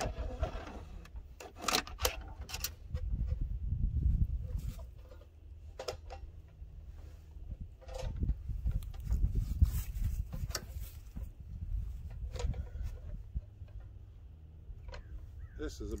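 Scattered light clicks, knocks and rubbing of hands working parts on an engine's carburetor and throttle cable as they are fitted, over a steady low rumble.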